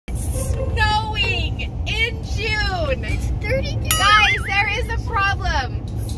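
Excited, high-pitched voices calling out throughout, over the steady low road rumble inside a moving car.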